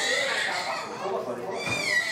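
A young child's high-pitched whining cry: a short wavering wail, then a longer drawn-out cry that sags slightly in pitch.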